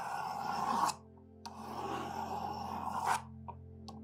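Pencil lead of a drawing compass scraping across watercolour paper as a circle is drawn, in two strokes: one of about a second, then a longer one of about a second and a half.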